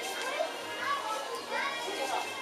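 Children's voices chattering and calling over one another, with a couple of high calls rising and falling about a second in and near the end.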